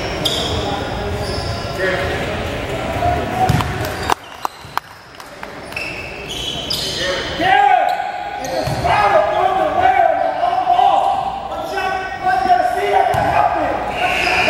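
Basketball bouncing on a hardwood gym floor at the free-throw line, echoing in a large gym. There are a few sharp knocks about four seconds in, then a short lull before voices pick up.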